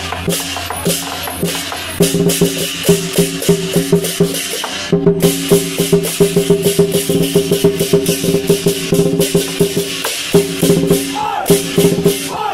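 Chinese lion dance percussion, with drum, cymbals and gong, playing a fast, dense rhythm of loud strikes over a steady ringing tone. It breaks off briefly about two and five seconds in.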